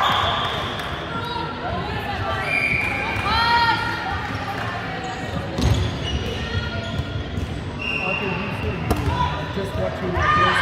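Indoor volleyball rally in a large hall: the ball is struck hard once about halfway through, among short high squeaks and players' calls that echo around the hall.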